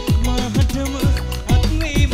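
A live band playing a Sri Lankan pop song, with drums, bass and keyboards keeping a steady beat of about two drum hits a second.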